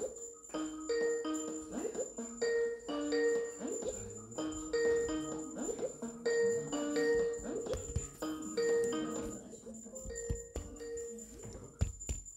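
A looped electronic melody of bell-like tones: a short phrase alternating between two notes, repeating about every one and a half seconds, that stops shortly before the end.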